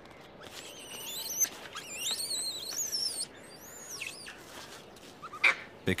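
Hanuman langur monkeys squealing: a run of high calls that rise and fall for about three seconds, then one short call about four seconds in.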